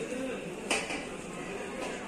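A sharp clink about two-thirds of a second in, with a fainter one near the end, over the steady background murmur and clatter of a busy hall.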